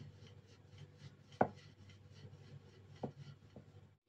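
Rolling pin rolling out a round of dough on a floured worktop: faint rubbing with a few light knocks, the loudest about a second and a half in.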